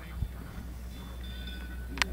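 Outdoor wind noise: a steady low rumble on the microphone, with a single knock just after the start and a faint, high bell-like ringing from about a second in.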